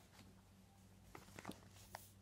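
Near silence: faint room hum with a few soft clicks as a paperback picture book is picked up and handled.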